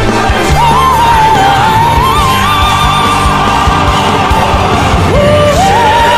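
Male singer performing live with orchestral backing and a steady beat: his voice slides up into a long high note with vibrato, held for about four seconds, then a new note slides up again near the end.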